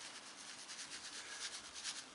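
Faint scratchy rustling of fingers working loose, dry garden soil, a string of small soft scrapes.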